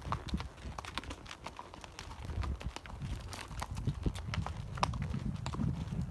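Horses walking on a gravel dirt trail, their hooves clip-clopping in an irregular run of sharp clops.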